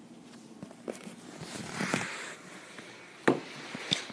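Plastic toy pony figures being handled and moved about on a play set: a soft rustle in the middle, then a sharp tap a little over three seconds in and a lighter one just before the end.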